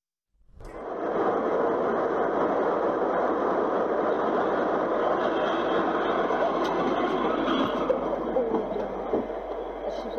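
Steady rushing noise of a moving vehicle, starting abruptly about half a second in and holding steady.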